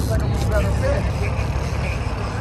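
Steady low rumble of the boat's engine and wind at trolling speed, with faint voices in the background.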